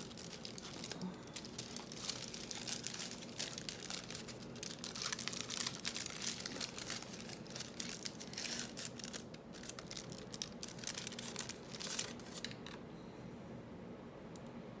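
Foil wrapper of a hazelnut milk chocolate bar crinkling and tearing as it is pulled open by hand, with irregular crackling throughout; the rustling stops shortly before the end.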